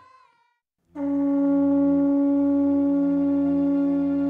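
Conch-shell trumpet blown in one long, steady note that starts about a second in.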